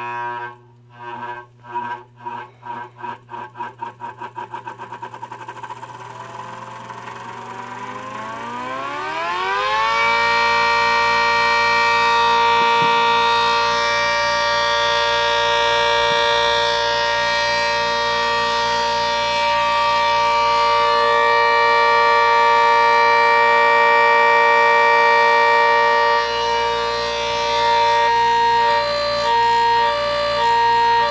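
3D-printed 8/10-port siren, a copy of the ACA Hurricane 130 with a 120 mm rotor, driven by an electric motor and spinning up from a standstill. Slow pulses quicken into a tone that winds steeply upward over about the first ten seconds, then holds as a steady, loud two-note chord. Near the end the sound is chopped into short bursts as a hand covers and uncovers the ports.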